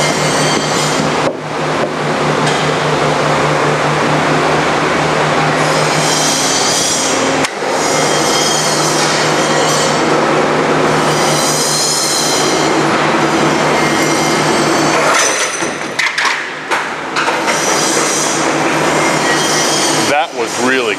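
Forrest Model 480i horizontal band saw running with a steady motor hum while its blade cuts into a round, ribbed plastic workpiece, with high-pitched screeching that rises and falls several times. The workpiece is not clamped, and the blade catches it and turns it in the cut.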